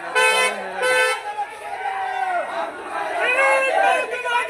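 A vehicle horn gives two short toots, then a crowd of men's voices shouts.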